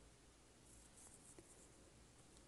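Near silence, with faint soft strokes of a liquid eyeliner pen drawing on facial skin, clustered about a second in.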